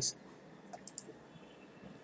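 A few quick, quiet computer mouse clicks about a second in, short and high-pitched.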